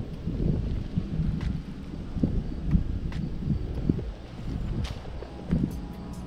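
Wind and handling rumble on an action camera's microphone, with irregular low thumps and scattered sharp clicks as the angler moves and tugs at a snagged fishing line.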